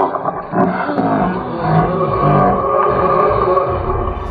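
Loud animal calls, one after another, with wavering, shifting pitch.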